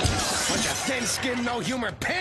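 A sudden shattering crash, like breaking glass, right at the start, lasting about half a second, followed by voices.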